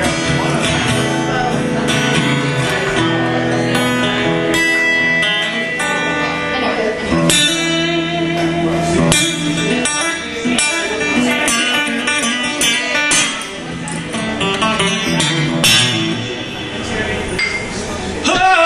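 A live country band plays an instrumental break, led by guitar with strummed chords and held notes, between the verses of a slow song.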